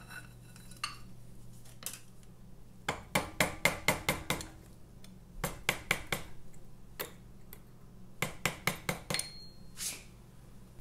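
Bursts of quick mallet taps on a small tool held against the clutch centre of a motorcycle's belt-drive primary, each strike a sharp metallic clink: about eight rapid taps, then shorter runs of several, with lighter tool clicks in the first seconds.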